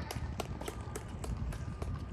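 Quick footsteps on a hard tennis court: a string of sharp, even taps, about three a second, over a low rumble.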